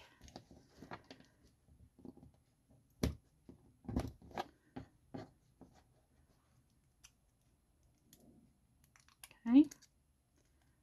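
A scattered handful of light taps and clicks as a hand and a hook-ended weeding tool work at small heat-taped sublimation pieces on the tabletop, the two firmest about three and four seconds in; then near quiet, and a spoken "okay" near the end.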